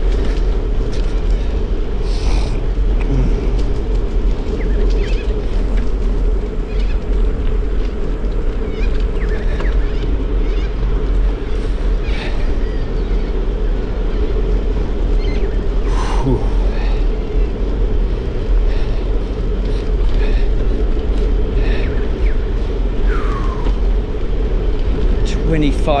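Wind rushing over the camera microphone and the rumble of a bicycle rolling along a paved path, loud and steady, with scattered short clicks and rattles.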